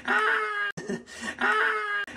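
A man's voice letting out a short sound and then a held 'aah', repeated as a loop about every 1.3 s, each repeat cutting off abruptly.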